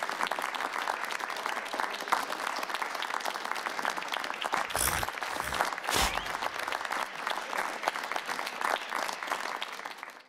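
Studio audience applauding in a steady, dense clatter of claps, with a couple of brief low thumps about five and six seconds in.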